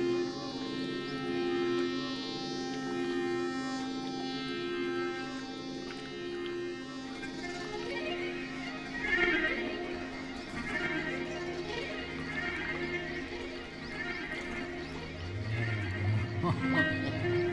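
Live ambient music: layered sustained drone tones, with a low note that comes and goes every second or two. From about eight seconds in, wavering higher sounds sweep up and down over the drone.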